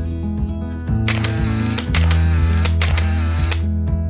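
Acoustic guitar background music, overlaid from about a second in with a camera shutter sound effect, a noisy mechanical stretch with several sharp clicks that stops near the end.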